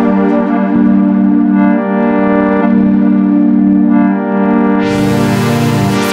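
A held synthesizer chord from Bitwig's Polymer synth, its tone changing as the ParSeq-8 parameter sequencer steps through its modulations. About five seconds in, a bright, hissy layer comes in on top.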